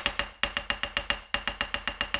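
Typing sound effect: a rapid, even run of sharp key clicks, about eight a second, each with a brief metallic ring, one click per letter as a title is spelled out.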